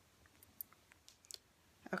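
A few faint, sharp clicks over near-quiet room tone: one about half a second in, a quick pair a little after the middle, and another just before the end.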